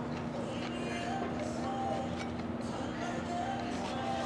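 Soft background music over a steady low hum of room noise and faint chatter.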